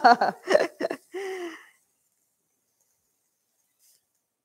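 A woman laughing briefly, her laugh running into a short held vocal sound under two seconds in, after which the sound cuts out completely.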